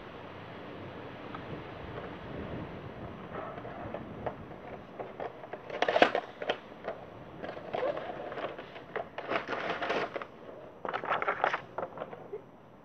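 Packaging of a pencil set being handled and pulled open: scattered crackles and rustles that start about a third of the way in and grow busier, with the loudest crackle near the middle.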